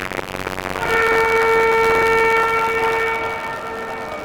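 A horn sounds one long steady note of about two and a half seconds, beginning about a second in. It rises out of a noisy background that swells suddenly at the start.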